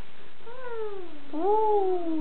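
A baby's voice: two long drawn-out vocal calls, the first sliding down in pitch, the second rising briefly and then sliding down slowly.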